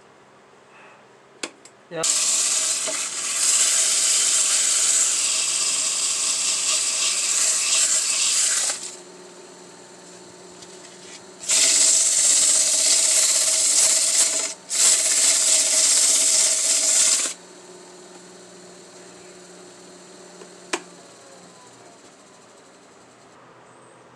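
Sandpaper hissing against a black walnut bowl spinning on a wood lathe: one long pass, then two shorter ones close together, with the lathe's motor running steadily in between.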